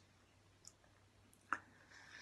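Near silence with two faint, short clicks: a tiny one about two-thirds of a second in and a sharper one about a second and a half in.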